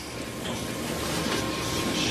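Steady background room noise, an even hiss and hum with a faint steady high tone, slowly growing a little louder.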